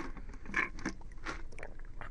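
A pause with low room sound, a couple of soft breath-like hisses and a scatter of small clicks at a desk microphone.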